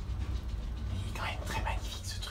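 Schindler traction elevator car travelling through its shaft to a landing, a steady low hum. A short soft whisper-like voice sound comes about a second in.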